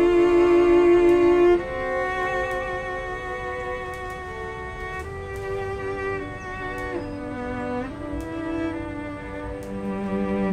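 String quartet of two violins, viola and cello playing slow, long bowed notes. A loud held note ends about one and a half seconds in, and the playing goes on more softly after it.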